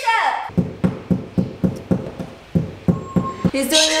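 A run of about a dozen even knocks, roughly three a second, that stops about half a second before the end.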